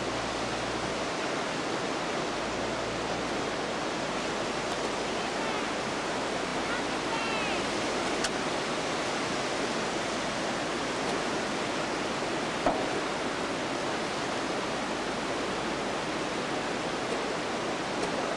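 Steady, even rush of ocean surf and tidewater washing in. A faint voice is heard briefly around the middle.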